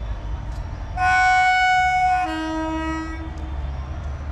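Indian Railways locomotive horn sounding once as the train approaches: a loud high note for just over a second, dropping to a lower, quieter note that fades out. A low rumble runs underneath.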